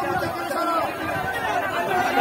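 A crowd of men talking and calling out over one another, a steady babble of many overlapping voices.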